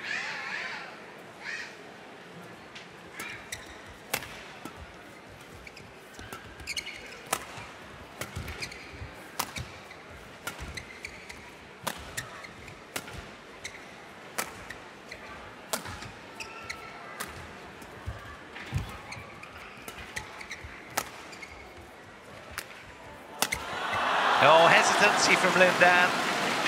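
Badminton rally: sharp racket strikes on the shuttlecock, irregular and roughly a second apart, in a large hall. Near the end the rally stops and a sudden swell of crowd voices takes over.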